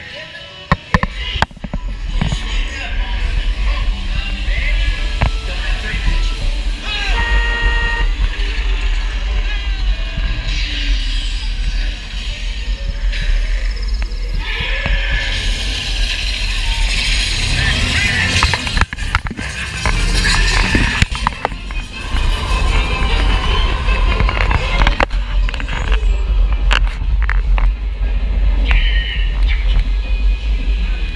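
Ride vehicle rumbling steadily along its track through a dark ride, with the ride's music and character voices playing over it.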